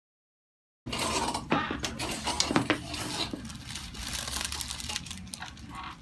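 Silence for about the first second, then rustling with scattered light clicks and knocks as a patient settles on a paper-covered chiropractic table and hands position her head.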